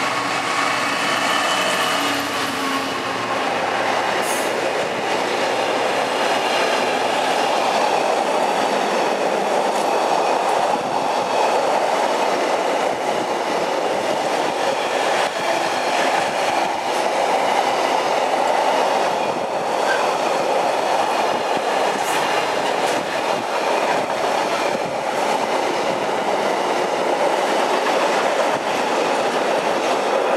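A Class 66 two-stroke diesel locomotive passes at speed, its engine note heard in the first few seconds. A long train of intermodal container wagons follows, rolling past with a steady wheel-on-rail noise.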